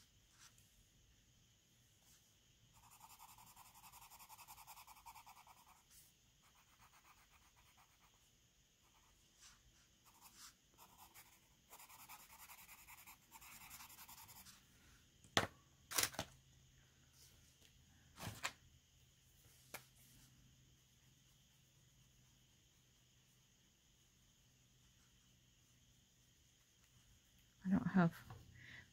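Faint scratching of a colored pencil on paper as a stamped image is coloured in, in two short stretches of strokes, followed by a few sharp taps about halfway through.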